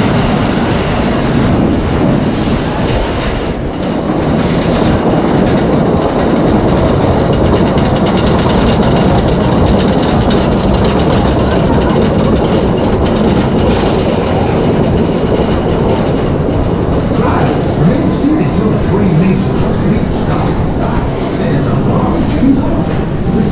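Wooden roller coaster train running along its track, a loud steady rumble and clatter.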